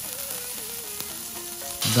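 Chicken-heart skewers coated in a teriyaki-and-honey glaze sizzling on a hot grill grate, a steady even hiss.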